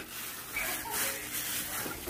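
Thin plastic bag crinkling and rustling as a hand grips and crumples it, with a faint voice in the background.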